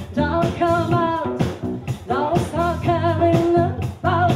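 Live band performing a pop song: a woman's lead vocal over electric guitar, bass guitar and a drum kit, with a steady beat of drum hits.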